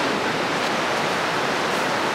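Sea surf washing onto the beach, a steady even hiss.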